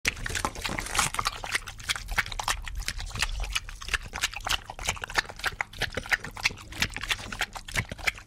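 Sound effect of a big dog licking a person's face: a fast, unbroken run of wet, slobbery slurps and smacks over a low rumble.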